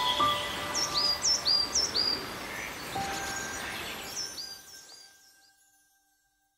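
A bird calling in two runs of short, high chirps, three quick ones about a second in and four more near the end, over soft held music notes and outdoor background noise. Everything fades out shortly before the end.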